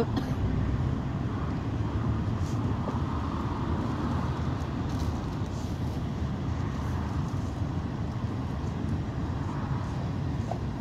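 Steady low rumble of a city bus's engine and road noise from inside the moving bus, with the sound of surrounding traffic.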